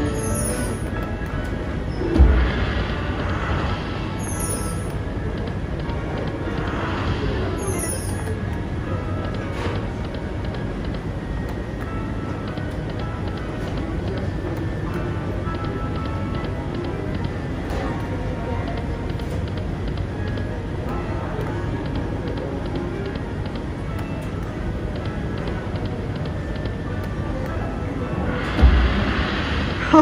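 Dancing Drums Explosion video slot machine spinning its reels, playing its electronic music and reel sounds over a steady casino din. There is a low thump about two seconds in and another near the end.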